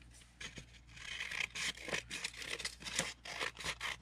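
A thin printed book page being handled and worked at the desk: a run of dry papery rasps and rustles, starting about a second in.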